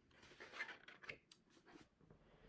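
Faint rustling and rubbing with a few light ticks, as books are handled and moved.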